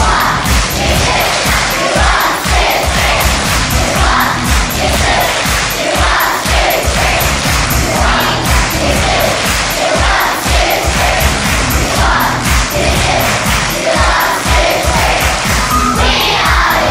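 A backing track with a steady beat, and a large group of young schoolchildren clapping and singing along.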